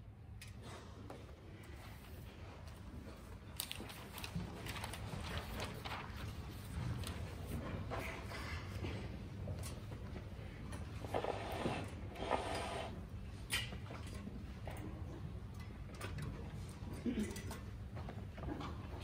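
Pause between movements of a symphony in a concert hall: faint rustling, shuffling and scattered small clicks from the audience and resting orchestra over a steady low hum. There are a few brief louder noises about eleven to twelve seconds in.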